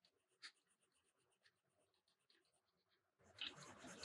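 Coloured pencil scratching on sketchbook paper, starting a little after three seconds in and much louder than the faint light ticks before it.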